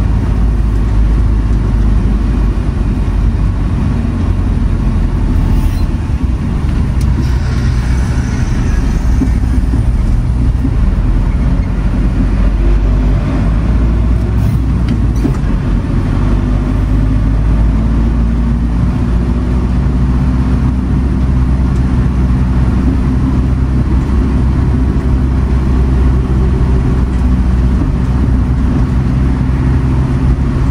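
A Ford van's diesel engine running under way with tyre and road noise, heard from inside the cab. It is a steady low drone, with the engine tones shifting a little in pitch about two-thirds of the way through.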